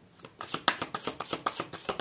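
A deck of tarot cards being shuffled by hand: a quick, irregular run of soft card flicks and slaps, starting a moment in.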